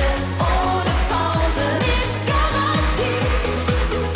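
Upbeat German Schlager pop song: a female lead voice singing over a steady kick drum about twice a second and a bass line.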